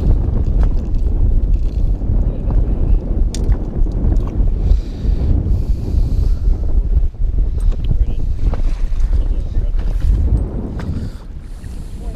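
Wind buffeting the microphone on an open fishing boat, a steady low rumble, with waves slapping at the hull and a few small knocks of handling.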